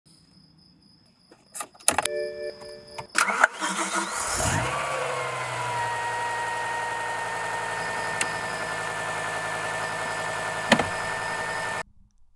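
A click and a short electronic tone, then the 2006 BMW M5's S85 V10 cranking and catching about four seconds in. Its revs ease down and it settles into a steady idle with a faint whine over it. There is a single click and, near the end, a sharp knock, and the sound cuts off abruptly just before the end.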